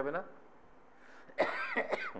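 A man coughs, clearing his throat with a short, rough, partly voiced cough near the end, after a brief pause following the last word of speech.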